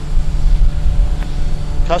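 Steady low outdoor rumble with a low hum underneath, and a faint click about a second in.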